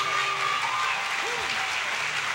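Concert audience applauding, with a few voices calling out among the clapping.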